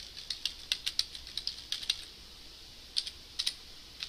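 Typing on a computer keyboard: a quick run of keystrokes for about a second and a half, a pause, then a few more keystrokes near the end.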